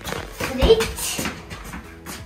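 A child's brief voice and footsteps on a tiled floor in a small room, with a couple of low thumps, over background music.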